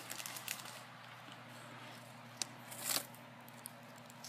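Faint handling sounds from pieces of freeze-dried astronaut ice cream and their packet: a few soft clicks, and one brief crinkle about three seconds in.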